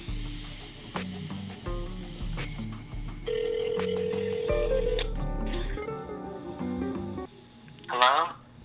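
Telephone ringback tone heard over a phone's speaker: one steady ring about three seconds in, lasting a second and a half, with background music with a beat running under it. Both stop about seven seconds in.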